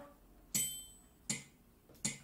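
Metronome-style click ticking at a steady beat, one sharp tick about every three-quarters of a second with a brief bright ring after each.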